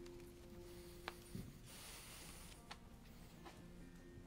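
Faint, soft held notes from a worship band as a song is about to begin, dropping out partway through and returning near the end. A few light clicks and a brief soft hiss sound in between.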